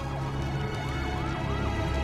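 Emergency-vehicle siren in the distance, wailing in short rising-and-falling sweeps, over a steady low rumble and film score.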